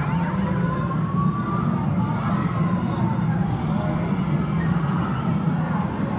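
Steady arcade din of game machines, with electronic game tones that glide slowly up and down like a siren.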